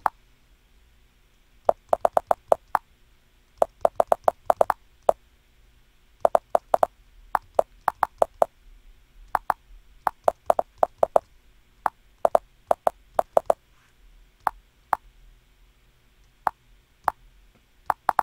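Computer keyboard keys clicking in quick bursts of several strokes with short pauses between, as words are typed and deleted; the strokes thin out to single clicks in the last few seconds.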